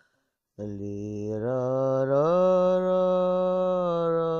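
A singer's low, wordless chant-like vocal, unaccompanied. The voice comes in about half a second in on a low note, steps up, then glides higher about two seconds in and holds a long steady note.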